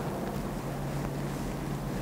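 Steady low hum with a faint hiss: the room tone of the studio recording.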